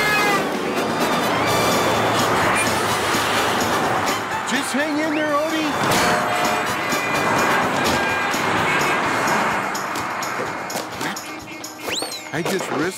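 Cartoon soundtrack: busy background music with street-traffic and car sound effects, and a short cartoon voice cry about five seconds in.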